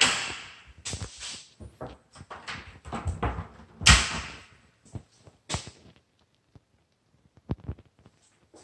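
A run of knocks and clunks in a small room, the loudest right at the start and another about four seconds in, then only a few light ticks.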